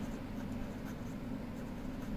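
Ballpoint pen writing on ruled notebook paper, faint, over a steady low hum.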